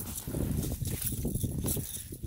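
A freshly landed fish flopping on snow-covered ice: a quick, irregular run of dull thumps and slaps.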